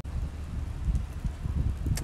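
Wind buffeting a phone's microphone outdoors: an uneven low rumble with no other distinct sound.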